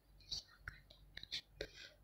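Faint whispering under the breath, a few short hissy syllables with small mouth clicks between them.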